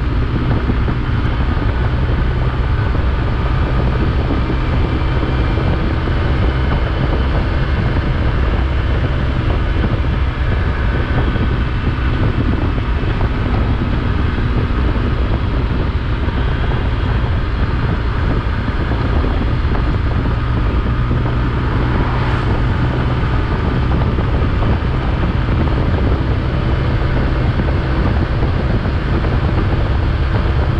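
Motorcycle engine running steadily at cruising speed under heavy wind rush, with tyre hiss on a wet road. A short, sharper rush comes about two-thirds of the way through.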